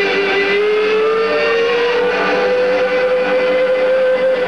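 Country band playing live, with one sustained instrumental note sliding slowly upward about half a second in and then held over the band's backing.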